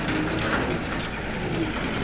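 A bird, dove-like, cooing faintly over a steady low outdoor rumble.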